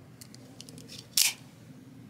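Microtech Combat Troodon out-the-front automatic knife: a few faint clicks of the button being worked, then a single sharp snap just over a second in as the spring drive fires the blade back into the handle.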